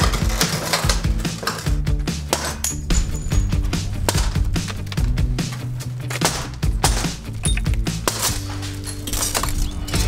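Background music over repeated sharp clinks and cracks of broken window glass being knocked out of its frame with a hammer.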